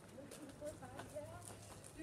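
Faint, high, wavering vocal sounds, with light footfalls on dry ground.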